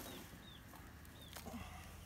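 Faint bird chirping: short, high, arched notes repeated several times. About a second and a half in comes a brief scratchy rustle of hands digging through sandy potting mix in a wheelbarrow.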